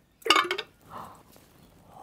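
A fidget spinner dropped into a glass jar of water: a sudden splash just after the start, then a softer knock about a second in as it sinks against the glass.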